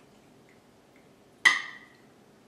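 A single sharp clink of a metal fork against a ceramic plate about one and a half seconds in, ringing briefly as pasta is served onto it; otherwise quiet room tone.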